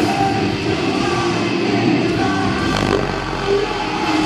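Metalcore band playing live and loud, recorded on a camera microphone that struggles with the volume. A deep, sustained bass drop comes in under the band about three seconds in.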